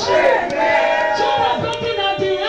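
A woman's voice through a microphone and loudspeakers, crying out loudly in prayer with long held, wavering notes; the recogniser finds no words in it.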